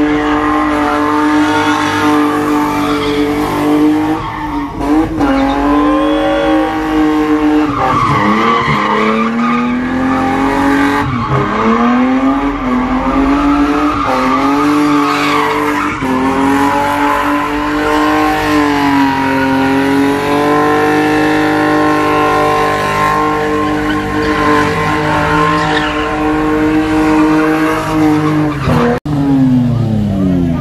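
A Nissan 350Z's V6 engine held at high revs during a burnout, tyres spinning against the pavement. The revs dip briefly and climb back several times, and fall away at the end.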